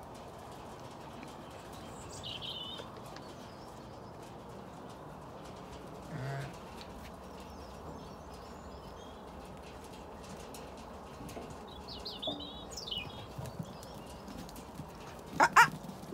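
Zwartbles sheep eating sheep nuts from a trough: a steady run of small crunching, chewing clicks over a low rustle. A couple of short bird chirps come through, and a brief loud high-pitched call sounds near the end.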